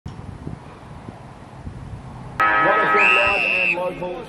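Low outdoor noise with faint low thumps. About two and a half seconds in, it cuts abruptly to the louder sound of a football ground: voices, several steady tones, and a held high tone lasting under a second.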